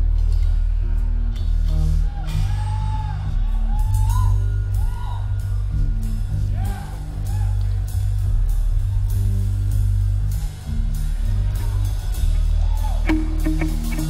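A rock band playing live: heavy bass and drum kit with electric guitar, an instrumental passage with no singing.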